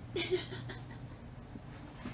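A woman's short breathy exhale near the start, then a quiet room with a steady low hum and a couple of faint clicks.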